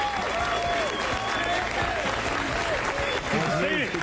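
Studio audience applauding steadily, with voices over the clapping and a man speaking near the end.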